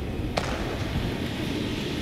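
A steady rushing noise, laid in as the sound of a vast flock of passenger pigeons' wings, with one sharp crack about half a second in.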